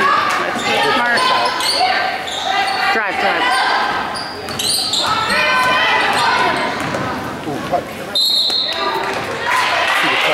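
Basketball game play on a hardwood gym court: the ball bouncing, sneakers squeaking sharply on the floor, and voices calling out, all echoing in the large gym.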